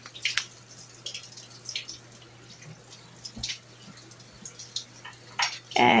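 Hands patting and shaping a raw ground-beef patty stuffed with cheese: soft, irregular smacks and squishes scattered through a quiet stretch.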